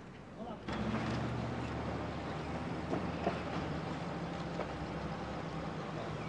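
Vehicle engine idling with a steady low hum that cuts in suddenly under a second in, with faint voices over it.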